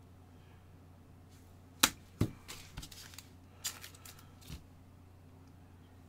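Gloved hands handling trading cards and packs on a tabletop: a few sharp clicks and light rustles, the loudest about two seconds in, over a faint steady low hum.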